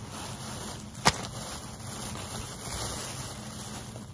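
Plastic shopping bag rustling steadily as hands dig through it for packs of clay beads, with one sharp click about a second in.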